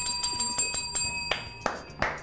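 A bright, high ringing chime with a fast shimmer for about the first second, then two hand claps.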